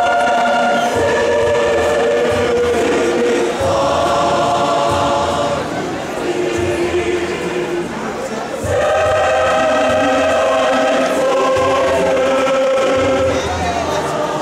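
Large choir singing in parts, holding long sustained chords that change every second or two. The sound thins and softens about six seconds in, then swells back to full volume near nine seconds.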